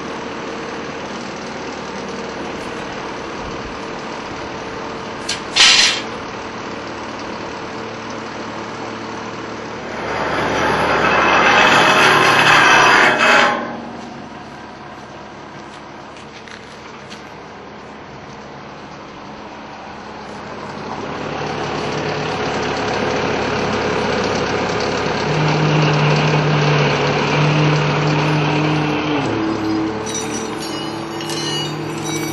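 The crane's engine running steadily, with a short sharp hiss about five seconds in and a louder rushing hiss from about ten to thirteen seconds. In the last third the engine runs louder and at a higher, steady note while the crane lifts.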